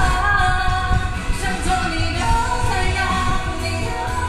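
A woman singing a pop song live into a handheld microphone through the stage sound system, over amplified backing music.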